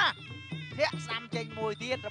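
A TV commentator's voice talking fast over steady traditional Kun Khmer ringside music, with reedy held tones running underneath.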